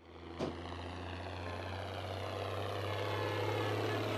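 Diesel tractor engine pulling a loaded trailer, running at a steady pitch and growing gradually louder as it approaches. There is a brief click about half a second in.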